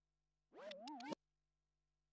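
A record scratched by hand on a DJ turntable: one short pitched burst, its pitch wobbling up and down, starting about half a second in and cutting off sharply. Near silence otherwise.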